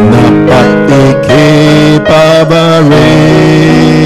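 Live church worship music: guitar playing a Tamil worship song, with a melody line that holds notes and slides between them.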